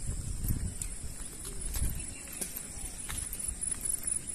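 Quiet outdoor ambience: a low rumble of wind on the microphone and a thin, steady high-pitched whine, with a few faint, irregular light clicks.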